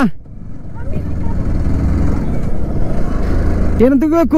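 Sport motorcycle riding along the road: engine and road noise, a low rumble that builds up over the first second and then holds steady.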